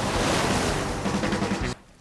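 Roar of breaking ocean surf with background music beneath, cutting off abruptly near the end.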